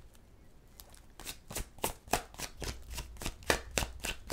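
A tarot deck being shuffled by hand: a quick run of short card snaps, a few a second, starting about a second in.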